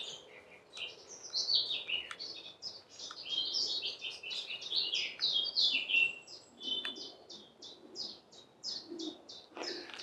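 Woodland birds singing: a busy mix of short, high chirping notes, with a fast, evenly repeated run of notes in the second half.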